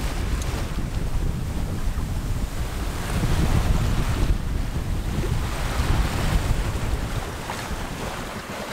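Wind noise on the microphone, heavy and low, over the steady wash of open-ocean waves around a sailboat under way.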